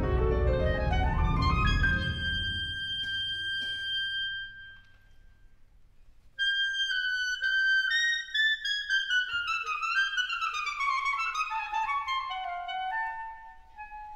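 Wind ensemble playing live. A full-band passage of rising runs ends on a held high note that fades away, leaving a short near-silent pause. About six seconds in, high woodwinds come in suddenly with a held note, play descending runs, and settle on a held lower note near the end.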